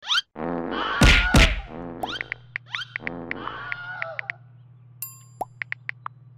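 A step-sequenced loop of comic sound-effect samples (a punch, a fart, a scream and a slip) played as a beat: sudden hits and gliding squeaks with short cries, over a low steady drone from about a second and a half in.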